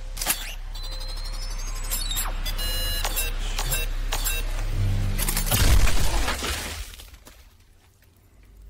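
A pistol blowing up or going off in the hand of the man holding it, a loud, deep burst with a shattering edge a little past the middle that then dies away. Before it come sharp mechanical clicks and a brief electronic tone, all over a low droning film score.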